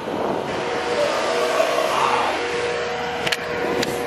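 A nearby engine running steadily: a rushing noise with a faint humming tone, swelling slightly about two seconds in and cutting off suddenly at the end.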